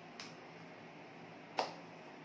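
Two sharp hand slaps as a signer's hands strike together, a faint one near the start and a louder one about a second and a half in, over faint room hiss.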